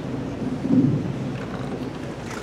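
Low, muffled rumbling of handling noise on a clip-on microphone as it is jostled, swelling to its loudest just under a second in.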